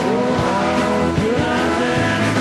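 Live rock band playing loudly, with bending, sliding notes that rise and fall about once a second over sustained chords.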